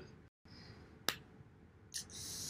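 A single sharp click about a second in, over faint room tone.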